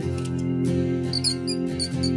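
Short, high-pitched mouse squeaks in a quick run starting about a second in, over steady background music.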